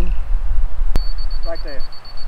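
A click, then a laser level's electronic beeper sounding a rapid, steady string of high-pitched beeps, the tone it gives while it is being set up or when it is on grade. A low rumble runs underneath.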